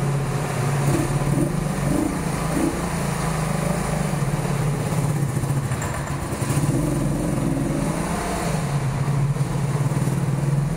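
Honda V45 Sabre's liquid-cooled 750 cc V4 engine running at low speed as the motorcycle is ridden slowly, its revs rising and falling a little.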